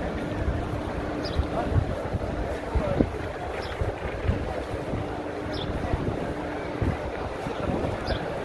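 Wind buffeting the microphone in uneven gusts, over a background murmur of many people's voices.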